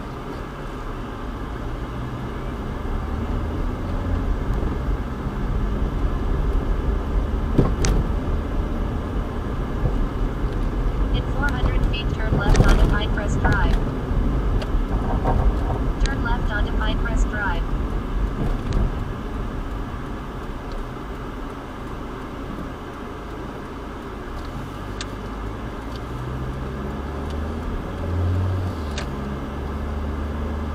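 A car driving slowly on town streets, heard from inside the cabin: a low engine and road rumble that rises and falls with speed. Brief voice-like sounds come in around the middle.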